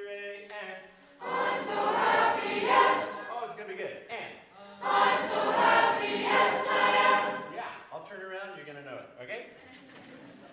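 Mixed choir of teenage voices singing, in two loud, full phrases about a second and five seconds in, with quieter singing between and after them.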